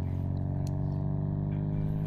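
Low bass test tone from a budget computer subwoofer speaker covered with water, a steady low drone with a buzzy edge. The tone vibrates the water on the speaker into ripples.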